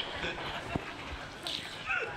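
A woman's soft, close-miked voice and small mouth sounds from a mukbang livestream recording, with a sharp click about three-quarters of a second in.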